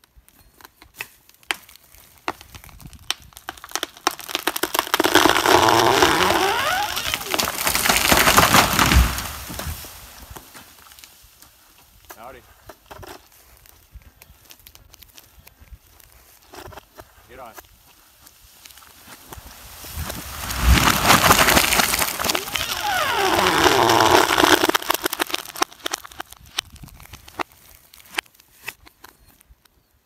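A large conifer felled by chainsaw, falling: a rushing swish of branches through the air for several seconds, ending in a heavy crash on the ground about nine seconds in. The same fall then plays again reversed, with the crash near twenty-one seconds and the swish dying away after it.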